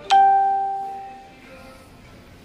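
A single bell-like chime, struck once just after the start and ringing out, fading away over about a second and a half.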